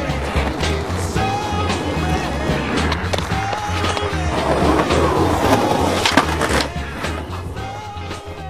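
Skateboard wheels rolling on pavement, loudest about halfway through, over background music with a steady bass beat.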